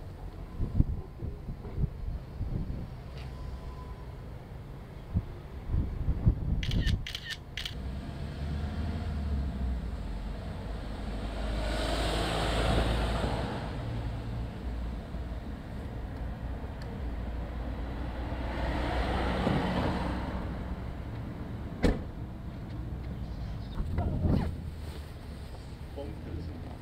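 Street ambience with a steady low rumble, and a car passing twice, each time swelling and fading away. A few sharp clicks come about a quarter of the way in, and a single knock comes late on.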